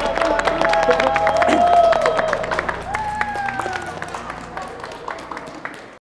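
A small group clapping and laughing over background music, everything fading out over the last few seconds.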